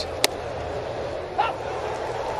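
Ballpark crowd murmur, with one sharp pop about a quarter second in as the pitch smacks into the catcher's mitt, and a short call from a voice about a second and a half in.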